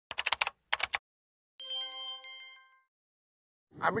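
Intro sound effect: two quick runs of rapid key-like clicks, then a single bell-like chime that rings out and fades over about a second.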